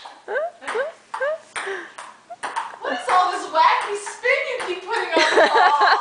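A ping-pong ball clicks off the table and paddle several times in the first half. From about halfway, voices and laughter take over.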